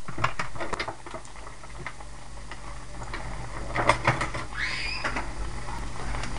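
Battered Oreos deep-frying in a pot of hot oil: a steady bubbling with scattered crackles and pops, a few louder pops about four seconds in.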